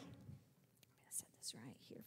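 Faint whispered speech: a few quiet syllables with hissing sounds in the second half, otherwise near silence.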